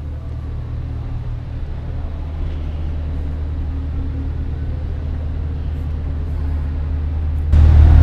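Steady low hum in an underground parking garage, made of several constant low tones. It grows louder near the end.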